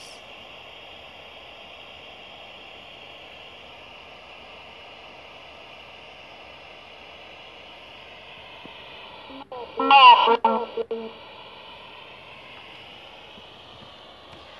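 Ghost radio app playing steady, thin static through a phone's speaker, broken about ten seconds in by a short garbled voice-like fragment with brief cut-outs.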